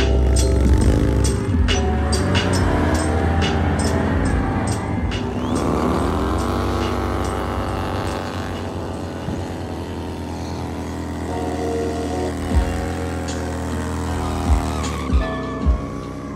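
Harley-Davidson V-twin motorcycle engines revving under a music track; about six seconds in, an engine's pitch dips and climbs again. A few sharp thumps come near the end.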